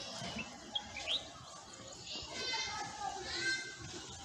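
Children's voices calling and shouting at a distance, high-pitched and unintelligible, louder in the second half, with a couple of short rising chirps about a second in.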